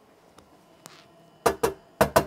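Cooling fans of a Netgear GS748T v5 48-port network switch running just after power-on, a faint steady whir that is a little noisy. The fans run fast until the switch finishes booting. About a second and a half in come two sharp knocks, from a hand on the switch's metal case.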